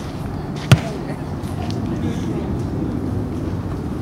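A single sharp thump about a second in, much louder than anything else, over a steady outdoor background rumble.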